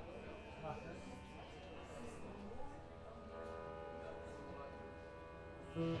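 Faint talking over a low steady hum while the band waits to play, then right at the end the band comes in loud: plucked veena notes over bass.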